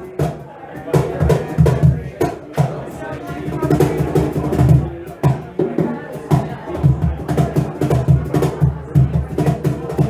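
Live duo music: an acoustic-electric guitar played with a small drum kit, snare and cymbal strokes keeping a steady rhythm.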